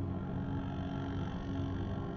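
Steady low droning and moaning tones sounding from the horns of a huge brass drum turning over a fire. The cries of the people shut inside come out of the horns as slow, organ-like music.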